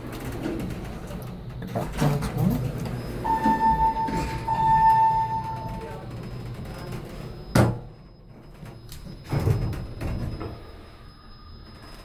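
Elevator emergency phone sounding a steady electronic tone for about three seconds, with a brief break partway. A few seconds later comes a sharp snap as the phone cabinet's hinged metal door is shut.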